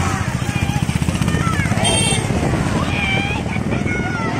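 Women's voices calling out over a motor vehicle engine running close by, its low, fast pulsing strongest in the first half. A brief shrill tone cuts in about two seconds in.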